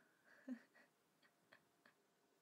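Near silence with a brief soft voice sound about half a second in, then three faint, sharp clicks in the second half.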